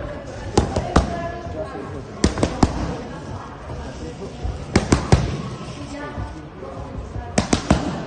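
Boxing gloves striking focus mitts in quick combinations of about three punches each, a burst every two to three seconds.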